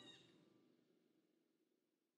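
Near silence: the tail of a song fades out within the first half second, leaving a gap between tracks.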